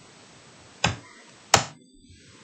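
Two sharp clicks from working a computer, a little under a second apart, against quiet room tone.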